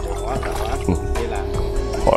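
A hooked fish splashing at the water's surface as it is reeled toward the boat, under steady background music.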